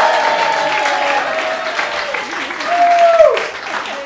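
A classroom audience clapping and laughing, with many voices calling out over the claps. About three seconds in, one voice gives a loud falling cry.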